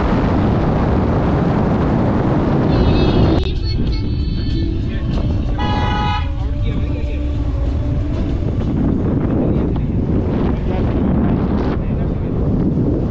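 Car driving along a road: a steady rumble of road and wind noise that drops abruptly about three and a half seconds in. A short horn toot sounds about six seconds in.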